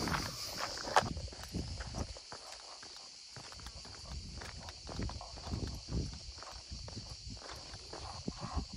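Footsteps on a dry dirt and gravel track, uneven and irregular, over a steady high-pitched chorus of summer insects.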